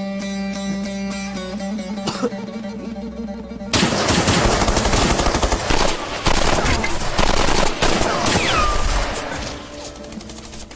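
Dramatic music holding a chord for the first few seconds. Then, about four seconds in, loud automatic weapon fire breaks out in dense, rapid shots, easing off near the end.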